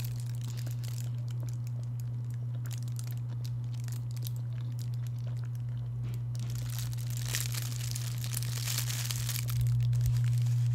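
A thin plastic bag crinkling and crackling in the hands while a bun held in it is bitten and eaten: scattered sharp crackles, then a longer, denser rustle near the end. A steady low hum runs underneath.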